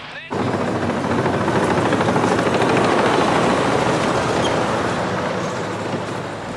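Wheeled armoured personnel carrier's engine running under load as it drives, a loud dense rumble over a steady low hum. It starts abruptly about a third of a second in.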